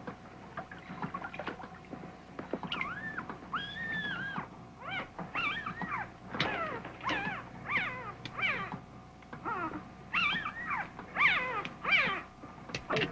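A newborn puppy whimpering and squealing: a string of short, high, wavering cries that begin a few seconds in, one of them longer and held, then coming quickly one after another toward the end.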